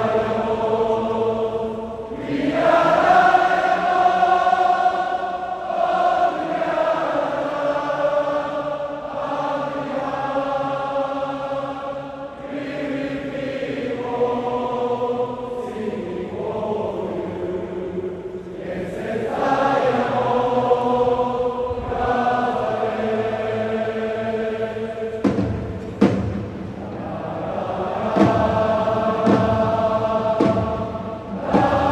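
Thousands of Urawa Reds supporters singing a chant in unison, in long sustained phrases that swell and ease. A few sharp beats are heard near the end.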